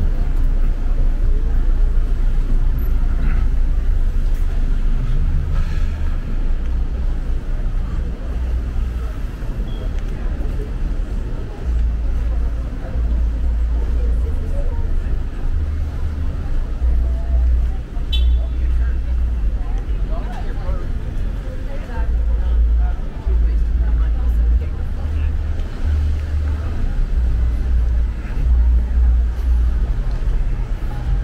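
Low, uneven rumble of street traffic from cars on the road, with faint voices of passersby.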